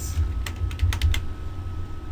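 Computer keyboard keystrokes: about six quick key clicks in the first second or so as a word is typed into a search field, then a pause.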